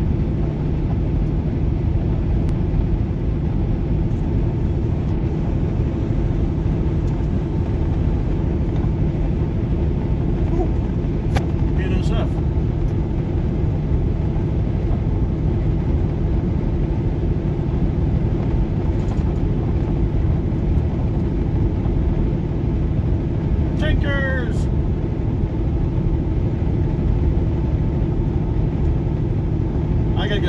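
Steady road and engine noise heard from inside a moving car, with a constant low hum. Two short vocal sounds come about 12 and 24 seconds in.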